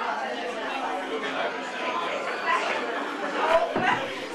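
Indistinct chatter of several people talking in a room, with two short knocks near the end.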